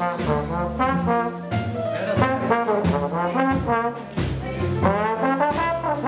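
Trombone playing a jazz melody line up front, over upright double bass and drums keeping a steady swing beat.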